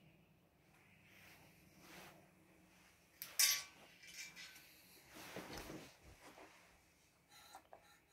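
Quiet handling noise: a few sharp metallic clicks and knocks, the loudest about three and a half seconds in, a brief rustle around five to six seconds in, and a few more small clicks near the end, as a brass trombone is handled before playing. The horn is not being played.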